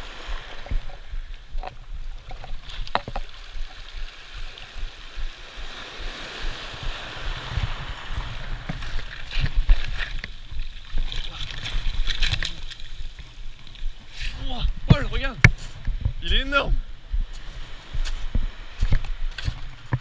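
Surf washing over a shingle beach, with wind rumbling on the microphone and scattered knocks. There is splashing as a hooked sea bass is grabbed out of the breaking waves. Short voice exclamations come in about three quarters of the way through.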